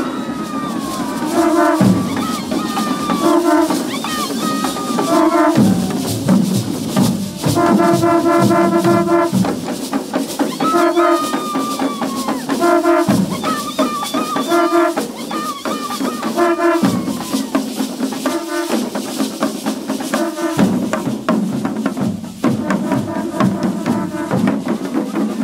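Conch shells blown in repeated short blasts on one steady note, one held for nearly two seconds near the middle, over hand drums beating a steady rhythm, as played by a Guadeloupe carnival mas group.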